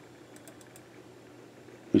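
Faint room tone with a quick cluster of soft computer-mouse clicks about half a second in, as an image file is opened; a man's voice begins right at the end.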